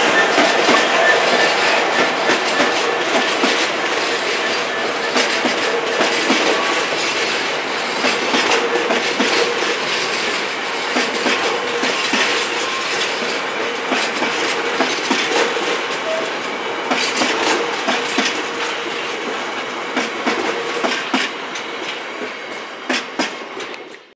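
Freight train of hopper wagons rolling past: a steady rumble with an irregular clatter of wheels over the rails, fading away over the last few seconds.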